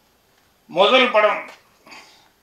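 A man's voice over a microphone: after a short pause, one loud, emphatic exclamation lasting under a second.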